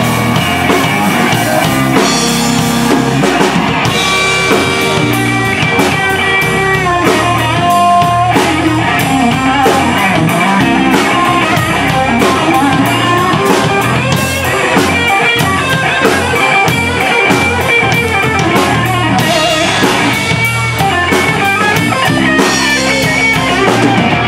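Live blues-rock band playing an instrumental passage: an electric guitar plays sustained, bending notes over a steady drum kit beat.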